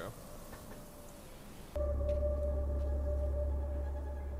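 A steady low drone with a single held tone above it, from the show's soundtrack, cuts in suddenly a little under halfway through and holds without change. Before it there is only faint hiss.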